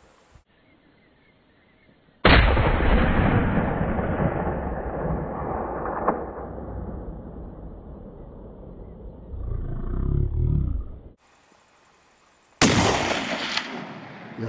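Two rifle shots from a .270 Winchester hunting rifle. The first comes about two seconds in and is followed by a long echo that rolls away over several seconds. The second, sharper shot comes near the end.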